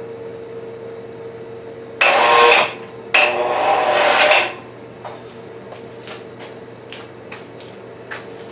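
Electric cable hoist motor running in two short bursts, the second longer, as it takes up a slack, lopsided strap on a heavy load; light clicks and knocks of the rigging follow over a steady faint hum.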